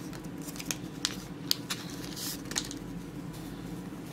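Paper screen-cleaning wipe sachet being opened by hand: scattered small clicks and crinkles, with a brief rustle about two seconds in.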